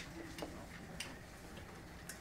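A few faint, light clicks, about three in two seconds, over quiet room tone: a stylus tapping on a tablet screen while handwriting.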